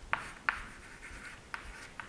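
Chalk writing on a chalkboard: a few sharp taps as the chalk meets the board, with short scratching strokes between them.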